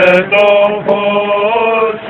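Male Greek Orthodox clergy chanting a Byzantine hymn in long, held notes, with short breaks between phrases.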